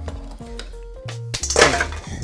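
Ice cubes clinking and cracking against a glass as a frozen-together clump is worked apart, with a loud sharp crack about one and a half seconds in. Soft background music plays underneath.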